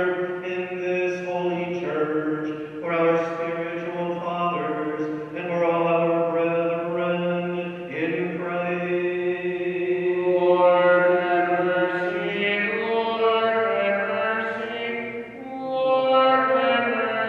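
Sung Byzantine-rite liturgical chant: a voice holding long notes that step from pitch to pitch.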